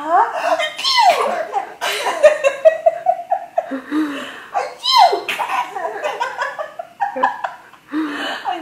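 A woman laughing and making playful high-pitched sounds at a baby in bursts of laughter, with high squeals that slide downward about a second in and again about five seconds in.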